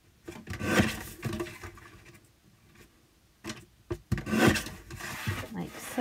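Sliding paper trimmer's cutting head drawn along its rail, slicing through a small piece of card with a rasping scrape, twice: once near the start and a longer pass in the second half, with two light clicks between.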